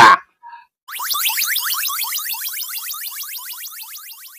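Synthetic chirp sound effect for a logo sting: a quick train of short rising electronic chirps starting about a second in, fading away gradually.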